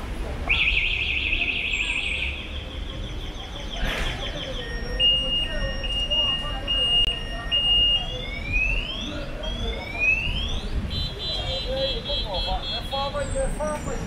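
A vehicle anti-theft alarm cycling through its siren patterns: first a fast warble, then a row of evenly spaced beeps, then several rising whoops, and near the end a rapid multi-tone trill. Low street traffic rumble and faint voices run underneath.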